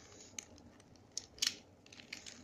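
Plastic pieces of a Square-1 Star puzzle clicking as its layers are twisted and flipped in a scramble: a few separate sharp clicks, the loudest about one and a half seconds in.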